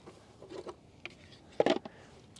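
Hollow plastic Kohree leveling blocks being handled and set down on dirt and gravel: faint scrapes, then a short louder clatter of the plastic about three-quarters of the way through.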